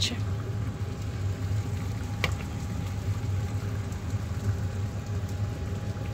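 Steady low hum and hiss of a pot steaming on the stove under its glass lid, with a light click about two seconds in.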